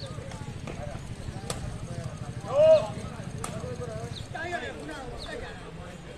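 A few sharp knocks of a sepak takraw ball being kicked, with shouts from players and onlookers; the loudest shout falls between the two strongest knocks.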